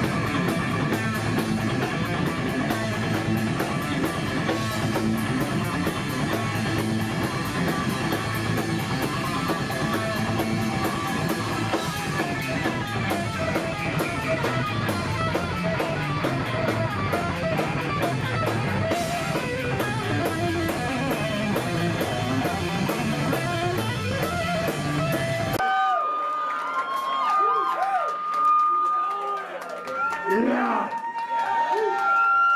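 Live thrash metal band playing: distorted electric guitars through Marshall amplifiers, bass guitar and drum kit. About four seconds before the end the full band stops abruptly, leaving a lone guitar holding one high note among bent notes.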